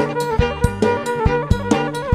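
Kantruem band playing an instrumental passage: a quick, even drum beat under a sustained melody line that steps from note to note.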